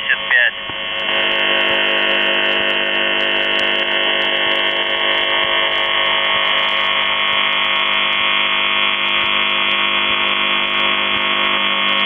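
The Buzzer (UVB-76), the Russian military shortwave station on 4625 kHz, sending its buzz tone as heard through a shortwave receiver: a harsh, steady buzz rich in overtones that starts about half a second in and holds without a break. The tops are cut off by the receiver's narrow audio band.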